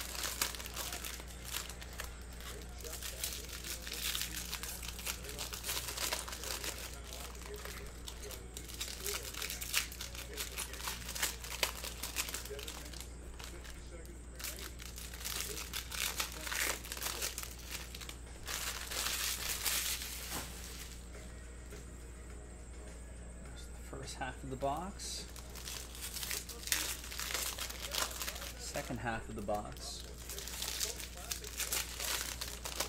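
Plastic trading-card pack wrappers being torn open and crinkled in the hands, in irregular bursts of crackling with a quieter stretch a little after the middle. A steady low hum runs underneath.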